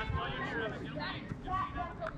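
Indistinct voices of people talking and calling out, with no words clear enough to make out.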